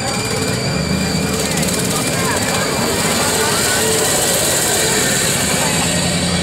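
Slow-moving pickup truck engine running as it passes towing a flatbed trailer, under a steady babble of crowd voices.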